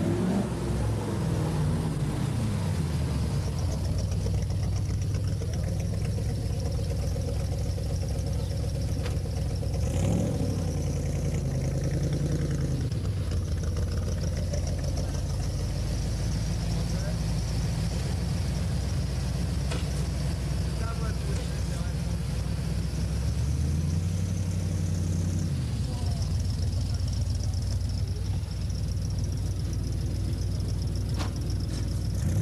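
AC Cobra replica's V8 engine running under way: a steady deep drone whose pitch rises and falls a few times, right at the start, again about ten seconds in, and once more in the last quarter.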